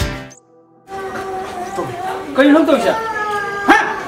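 Background music stops, a brief near-silence follows, then drawn-out, wavering vocal calls with some pitch glides, and a sharp loud burst near the end.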